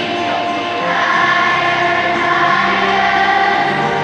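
A massed children's choir of thousands singing with musical accompaniment, in long held notes.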